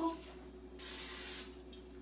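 Aerosol can of cooking oil spray giving one short hiss, about half a second long, about a second in.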